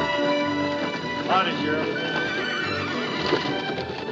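A horse whinnies about a second in, over film score music, with horses' hooves clopping on a dirt street.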